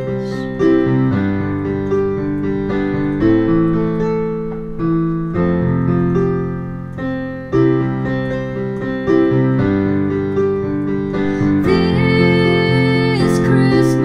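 Digital piano playing a slow instrumental passage of held chords, changing about every second or so.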